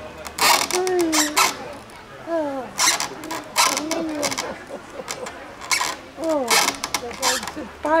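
A person laughing without words, in repeated breathy bursts mixed with short rising and falling voiced sounds, several times over the few seconds.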